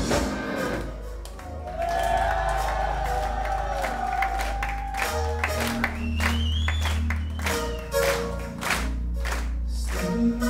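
Live progressive metal band playing in a club, heard from within the crowd. A loud full-band passage drops about a second in to a quieter stretch of long held notes over a deep bass, with sharp hits throughout and crowd noise underneath.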